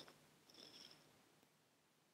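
Near silence: room tone, with a faint, brief high sound about half a second in.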